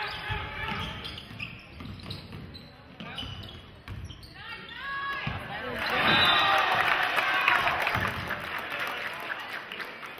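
A basketball being dribbled on a hardwood gym floor, a thud every second or so, with crowd voices in the gym rising to their loudest about six seconds in, after a basket.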